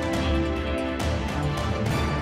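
News-intro theme music: held chords punctuated by percussive hits, about one a second.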